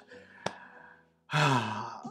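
A man's breathy sigh, a voiced 'ahh' lasting under a second in the second half. Before it comes a faint sip of tea with a small click.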